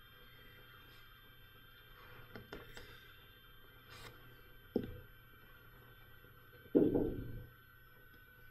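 Quiet room hum with a few light clicks, a sharp knock a little before five seconds in, and a louder short thump near the end.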